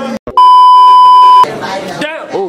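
A steady, very loud 1 kHz beep lasting about a second, with voices on either side: a censor bleep edited over a spoken word.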